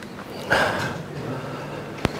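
A man's short breath out through the nose, close to the microphone, about half a second in, then faint room noise with a low hum.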